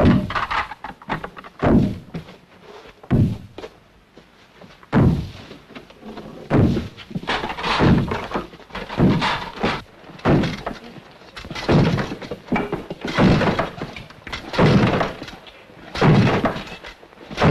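A run of heavy thuds and crashes in a stone room, about one every second and a half, each ringing briefly.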